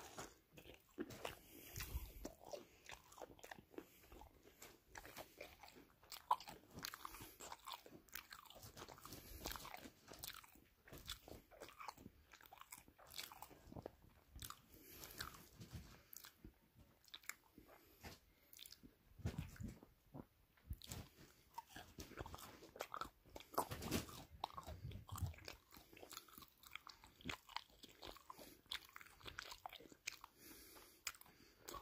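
A person chewing and crunching food close to the microphone, with a quiet, irregular run of small crisp crunches and bites throughout.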